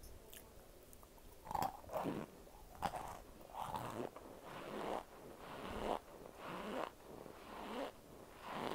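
A person biting into chunks of cornstarch with a few sharp crunches, then chewing them in a steady rhythm.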